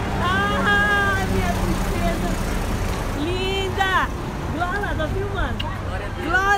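Several high-pitched voices calling out in drawn-out, rising-and-falling cries, strongest near the start and about four seconds in, over a steady low rumble of road traffic.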